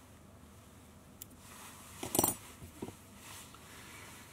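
Small fly-tying scissors trimming waste fibres at the hook: a faint click, then one sharp short metallic snip a little after two seconds in, and a softer click soon after.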